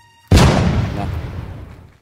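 A sudden loud burst of noise about a third of a second in, like a boom or heavy impact, dying away gradually over about a second and a half.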